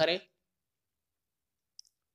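Near silence after a spoken word ends, broken by one faint, brief click shortly before the end.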